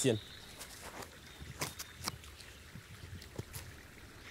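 Feet stepping and shuffling on a dry, leaf-strewn forest floor during a turning dance: faint, scattered clicks and rustles over quiet outdoor background.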